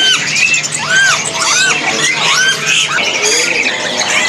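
A chorus of caged birds calling: many short, arching whistled chirps, several a second, overlapping one another.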